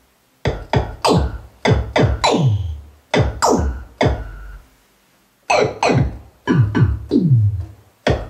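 Moog Minimoog Voyager analog synthesizer played from its keyboard with a percussive drum patch: synthesized bass-drum hits, each a sharp attack with a quick downward pitch sweep. The hits come in an uneven rhythm, with a short pause a little past the middle.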